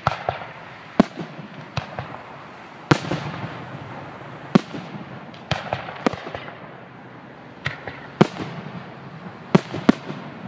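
Fireworks display going off: a string of sharp bangs, about ten of them at uneven intervals, with smaller pops in between.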